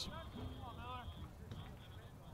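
Faint speech in two short bits in the first second, over a low, steady background hum.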